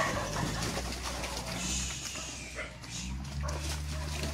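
Short animal calls and noises over a steady low hum that grows louder about three seconds in.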